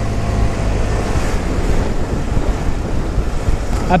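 Wind rushing over the microphone of a moving scooter, a steady low rumble, with the 2016 Vespa Primavera 150's small single-cylinder engine running underneath at cruising speed.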